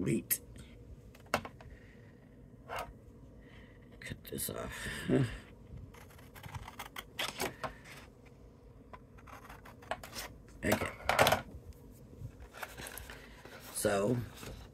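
Orange cardstock being handled on a scoring board: paper rustling and sliding, with scattered sharp clicks and taps and two louder rustling bursts, about a third of the way in and again past the middle.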